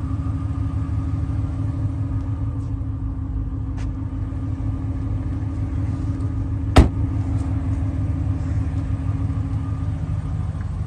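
Chrysler 300S engine idling steadily, heard at the rear by the exhaust. About two-thirds of the way through, a single sharp thump as the trunk lid is shut.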